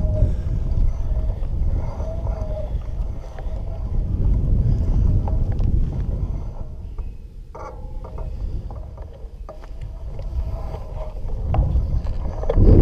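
Wind buffeting the camera microphone: a heavy, low rumble that eases off for a few seconds past the middle and builds again near the end.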